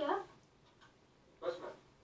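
Two brief spoken lines: a short question right at the start, then a one-word reply about a second and a half later, with quiet between.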